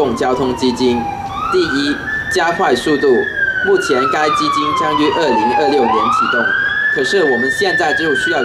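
An emergency vehicle's siren wailing: a slow tone that rises over about a second and a half, then falls over about three seconds, then rises and falls again, heard over continuing speech.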